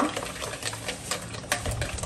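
Wire whisk stirring cake batter in a glass bowl, with irregular clicks of the wires against the glass.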